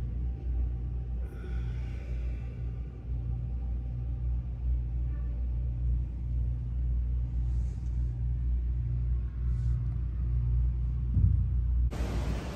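A steady low rumbling hum that holds unchanged throughout.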